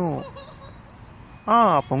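A man's voice reciting slowly in Telugu, with long drawn-out syllables. One phrase ends just after the start, and after a pause of about a second the voice comes back.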